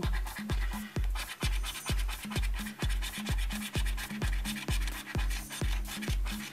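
A coin scraping the coating off a scratchcard, over background electronic music with a steady beat of about two thumps a second.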